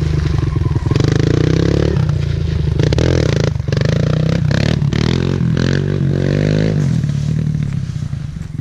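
Kawasaki KLX140L dirt bike's small single-cylinder four-stroke engine revving hard, its pitch rising in several pulls as it accelerates up through the gears, through an aftermarket exhaust pipe.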